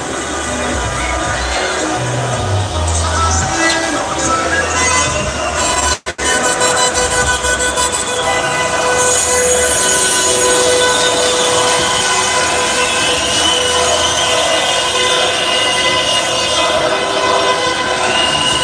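Car horns honking in stalled street traffic, several held as long, steady blasts over the din of the street. The sound cuts out briefly about six seconds in.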